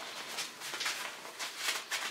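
Rustling and rubbing of thick insulated nylon mountaineering gloves as they are pulled on and handled: a run of soft, irregular scuffs.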